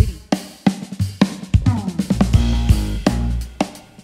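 A live band starting a song: a drum kit plays a beat of kick, snare and cymbal strikes. About halfway through, sustained low notes join it.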